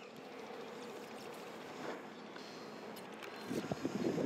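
Steady outdoor background noise; about three and a half seconds in, louder irregular rustling begins.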